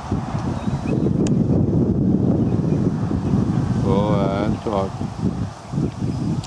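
Wind buffeting the camera microphone: a loud, steady, low rumble.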